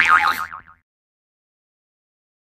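A cartoon "boing" spring sound effect: a tone that wobbles rapidly up and down and fades out under a second in, after which the sound cuts to dead silence.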